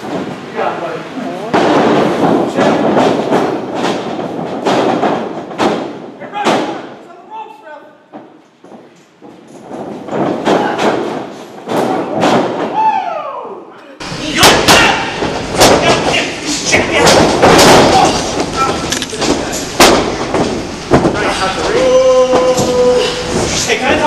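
Wrestlers' bodies hitting the ring mat again and again, a string of heavy thuds and slams, with shouting voices around them.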